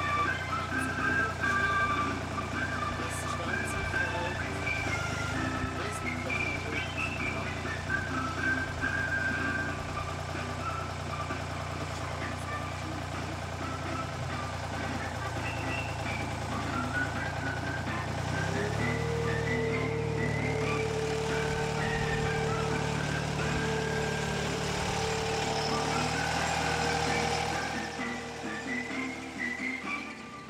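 Diesel engine of a Raup trac RT55 tracked forestry machine running steadily under background music. About two-thirds of the way in the machine's sound changes and a steady whine joins it.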